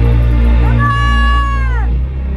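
A band playing live: low repeating bass notes, with a high lead note from the keyboard or guitar that slides up under a second in, holds, then bends down and cuts off just before the end.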